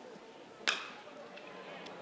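A single sharp crack of a bat hitting a pitched baseball, about two-thirds of a second in, putting a ground ball in play, over a faint steady crowd background.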